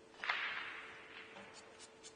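A cue tip striking the cue ball once with a sharp click that rings out for about a second in a reverberant hall, followed by a few faint ball clicks near the end.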